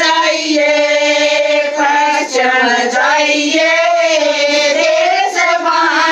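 Women singing a Haryanvi devotional folk song (bhajan) unaccompanied, in long drawn-out, gently wavering notes.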